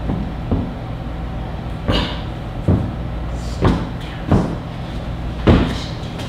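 A series of about seven dull knocks and thumps at irregular intervals, over a low steady hum.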